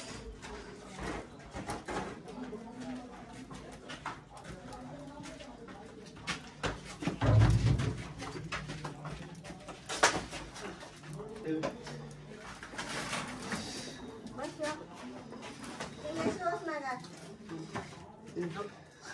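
Indistinct voices in a small enclosed room, with scattered clicks and one brief low thump about seven and a half seconds in.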